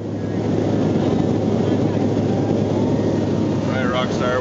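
Aircraft cabin noise in flight: a steady engine and air drone with a constant low hum, swelling up over the first half second. A voice starts right at the end.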